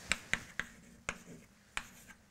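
Chalk knocking against a blackboard while writing: five sharp, unevenly spaced taps.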